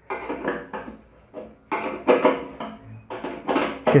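Light metallic clicks and rattles from a motorcycle fuel petcock's sediment cup, the small bowl that traps solid debris from the petrol, as it is gripped and handled by fingers. The clicks come in three short clusters: at the start, around two seconds in, and near the end.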